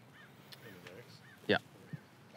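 A bird calling faintly in the background: four short arching notes in just over a second, goose-like to a tagger.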